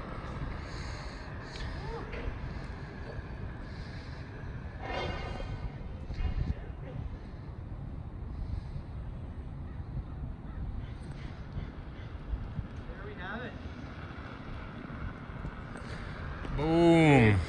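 Outdoor ambience dominated by a steady low rumble of wind on the microphone. A couple of brief distant calls rise above it, one about five seconds in and another near the end.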